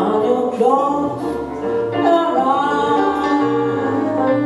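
Woman singing a jazz song live, holding long notes that slide in pitch, over a Roland FP-7 digital piano and a double bass.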